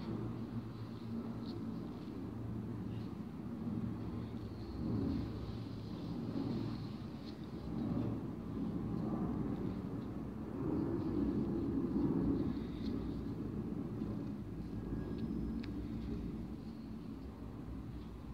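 Low, steady rumbling background noise that swells a few times, with no clear single event in it.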